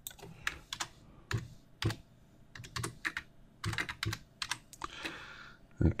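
Typing on a computer keyboard: irregular keystrokes in short runs with brief pauses between them.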